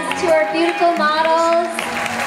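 Singing over music through a large hall's sound system, the voice holding and bending long notes.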